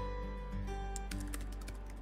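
Computer keyboard typing: a quick run of key clicks starting about half a second in, as a title is typed. Soft background music with sustained notes plays throughout.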